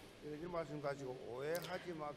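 Faint speech, well below the louder speech on either side.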